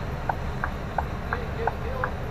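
A lorry's turn-signal ticking evenly, about three short ticks a second, over the low rumble of the diesel engine idling.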